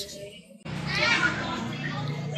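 Children's high-pitched voices calling out while playing, starting a little over half a second in and continuing.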